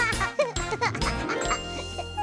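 Children's-show transition music: tinkling chime notes over held tones, with a rising glide in the second half. High, bouncy, voice-like pitch sweeps come in the first second.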